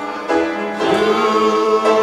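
Gospel music: singing voices with instrumental accompaniment, holding long notes that change every second or so.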